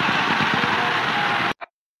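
Congregation applauding and cheering, with voices faintly through it; it cuts off abruptly about one and a half seconds in, followed by a brief laugh.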